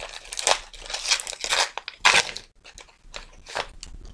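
Gift wrapping being torn open and crumpled by hand, crinkling in irregular bursts with a short lull about halfway through, as a small parcel is unwrapped.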